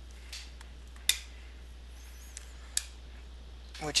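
A few short, sharp clicks from a hand pop-rivet tool (Model RH200) as its handle is worked, pulling the rivet's shank down to mushroom and set the rivet; the loudest click comes about a second in.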